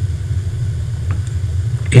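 Steady low rumble in a pause between phrases of a man's speech.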